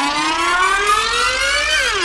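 A siren-like rising tone with several overtones, climbing steadily in pitch for almost two seconds, then starting to drop sharply near the end, as a sound effect in a song's mix.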